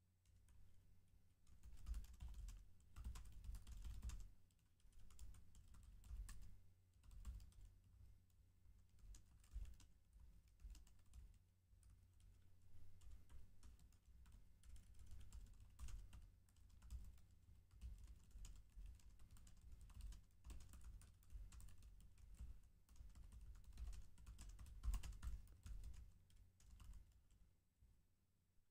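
Faint typing on a computer keyboard: an irregular run of key clicks with short pauses between bursts.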